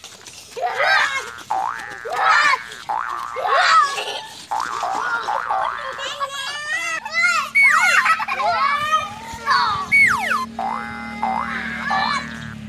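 Young children's voices shouting and squealing in play, overlaid with springy cartoon 'boing' sound effects that wobble and slide in pitch between about six and ten seconds in. A steady music bed joins about seven seconds in.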